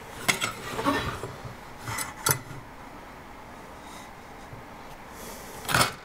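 Pencil drawing lines on a wooden 2x4 along an aluminium speed square: short scratchy strokes in a cluster about a second in and twice around two seconds, then a louder scrape or knock near the end as the square is shifted along the board.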